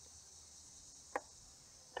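Faint, steady high-pitched insect chorus of crickets, with one brief sharp click-like sound a little over a second in.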